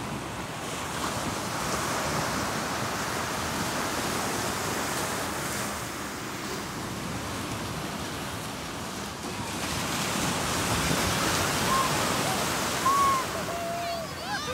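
Small waves breaking and washing up onto a sandy beach: a steady rushing wash that swells twice as the surf comes in.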